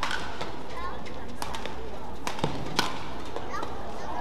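Badminton rally: several sharp racket strikes on the shuttlecock, the loudest about three seconds in, with short squeaks of court shoes on the mat between them.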